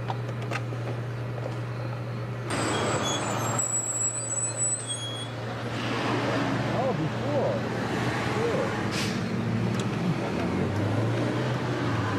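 A car's interior while driving in city traffic: a steady low engine drone under road and traffic noise. The road noise grows louder from about two and a half seconds in.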